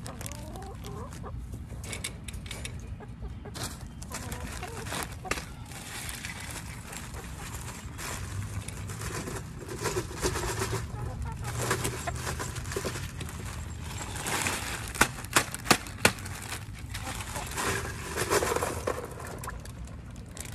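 Hens clucking close by, with rattles and knocks as a bag of ice is handled and ice cubes are tipped into a plastic chicken waterer, including a quick run of four sharp knocks about three quarters of the way through.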